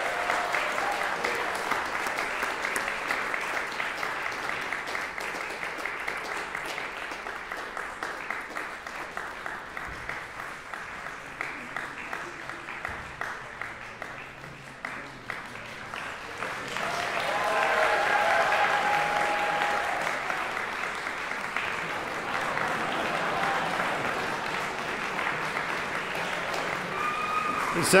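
Audience applauding. The clapping thins out midway, then swells again about two-thirds through, with some voices among it.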